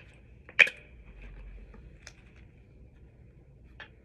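Handling of a shampoo bottle and tablespoon while measuring out shampoo: one sharp click about half a second in, then two faint clicks later on.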